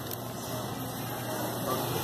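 Steady background noise of a supermarket, with a faint voice near the end.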